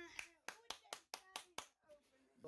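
Faint run of about eight sharp claps or taps in quick, uneven succession, after a short voice sound at the start.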